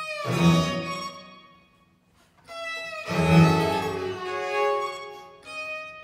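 Baroque string ensemble of violins and a low bowed string playing long sustained chords. A chord swells and dies away to a brief near-silent pause about two seconds in, then a new full chord enters and is held, fading before another entry near the end.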